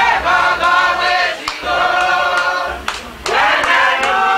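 A group of people singing together in long held phrases that slide in pitch, with a short break just before three seconds in. A couple of sharp knocks cut through the singing.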